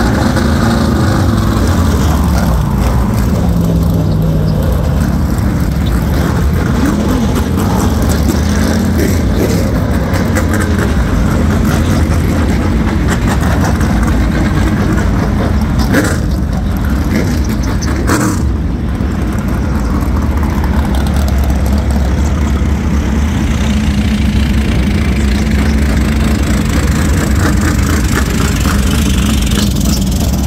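Race cars' engines running hard around the oval, loud and continuous, the pitch rising and falling as the cars accelerate and pass. Two short sharp cracks stand out in the middle.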